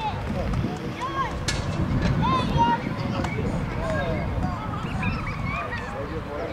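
Several voices calling out across a football pitch, high-pitched and overlapping, over a steady low rumble.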